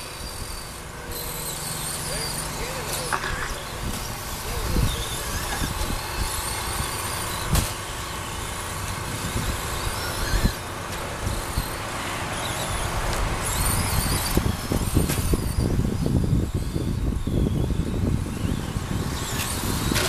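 Several electric radio-controlled short course trucks racing on a dirt track, their motors whining up and down in pitch as they accelerate and brake, over the noise of tyres on dirt. There are a couple of sharp knocks about five and seven and a half seconds in.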